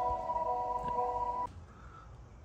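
2023 Honda CR-V Hybrid's reverse warning sound, a steady chord of tones, very loud and echoing in a garage; it cuts off about one and a half seconds in.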